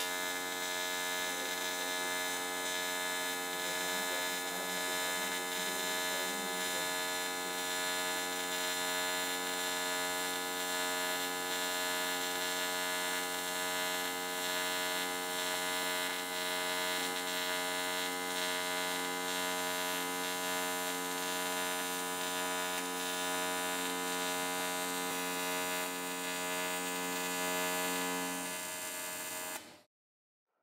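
AC TIG welding arc on aluminium during a manual fillet weld: a steady buzzing hum at one unchanging pitch. It drops slightly in level near the end, then cuts off abruptly as the arc is broken.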